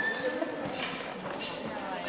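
Murmur of children's voices in a hall, with scattered light clicks and knocks from instruments and chairs, and a brief high tone at the very start.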